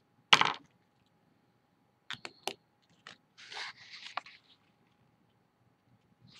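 Paper being folded in half and creased by hand on a tabletop. There is a sharp snap shortly after the start, a few light clicks about two seconds in, then a soft scraping rustle as the fold is pressed down.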